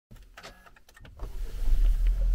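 Push-button start of a car: a few light clicks, then about a second in the engine starts, its low rumble swelling quickly and settling into a steady idle.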